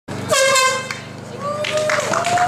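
A single short air horn blast, about half a second long, sounding the start of a 5K race. A voice then calls out in a long, slightly rising tone.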